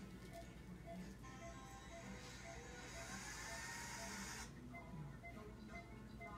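Faint background music with a short note repeating about twice a second, and a hiss from about one second in that cuts off suddenly near four and a half seconds.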